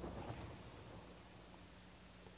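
Quiet room tone with a faint steady low hum, and a few soft handling ticks in the first half second.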